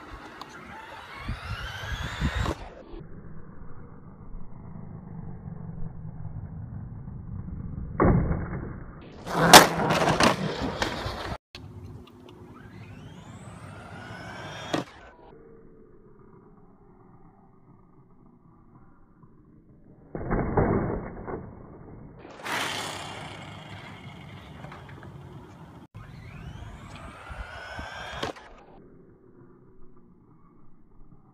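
Electric RC truck motor whining up in pitch as it accelerates, several times over, with loud clattering impacts of landings or crashes about ten seconds in and again about twenty seconds in.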